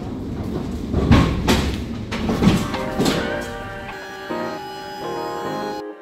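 Background music with held notes, over the loud rumble and clatter of a loaded pallet jack rolling across a trailer floor, heaviest in the first half.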